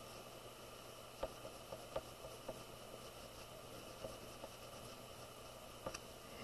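Faint scratching and a few soft ticks from a chalk pastel stick being stroked across drawing paper, over a steady low hiss.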